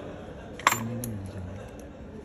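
Steel saw chain clinking sharply once against the guide bar and sprocket of a small cordless chainsaw as the chain is fitted, with a lighter click just after.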